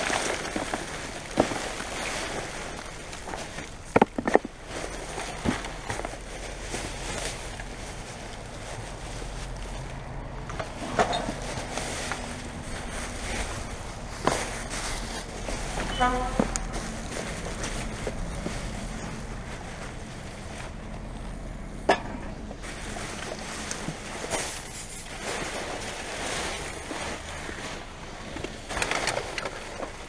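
Plastic rubbish bags and loose refuse rustling and crinkling as they are shifted by hand inside a full dumpster, with scattered sharp knocks and clicks from items being moved.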